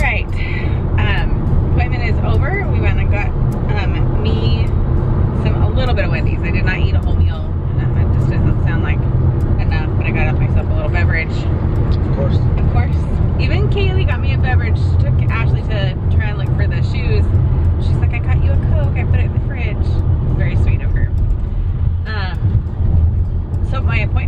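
A woman talking inside a moving car's cabin over a steady low rumble of road noise.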